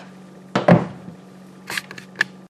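A glass baking dish is set down on a countertop: a close pair of knocks about half a second in, then a few lighter taps near the end, over a steady low hum.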